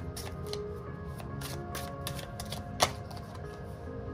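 Tarot cards being shuffled by hand: a run of quick, uneven card flicks and clicks with one sharper snap about three seconds in, over soft background music.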